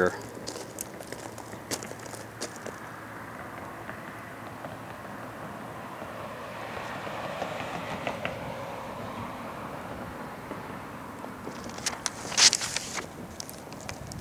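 Street traffic noise outdoors, swelling as a car passes by around the middle and then fading. A few sharp clicks and rustles come near the end.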